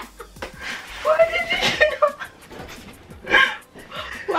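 Two women laughing hard, with breathy gasps and short vocal outbursts between the breaths.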